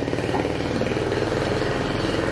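A small engine idling steadily, a low even hum with a fast regular pulse.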